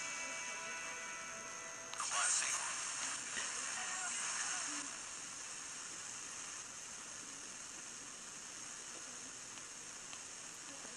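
FM broadcast radio audio from a software-defined radio app played through a phone speaker while being tuned across the band. A station's music fades at first. About two seconds in comes a sudden burst of noise with brief snatches of stations, which settles after about five seconds into steady static hiss between stations.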